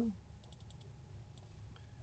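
A few faint computer keyboard clicks: a quick run of about four keystrokes about half a second in, and one more a little under a second later, while a spreadsheet cell is edited.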